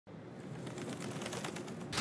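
Faint outdoor ambience with light bird chirps and soft clicks.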